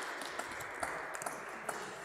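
Audience applause: a steady wash of clapping with single sharp claps standing out here and there.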